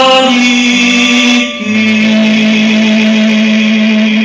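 A male singer holds long sustained notes over an acoustic ensemble of guitar, double bass and violin. A brief break comes about a second and a half in, then one long held note.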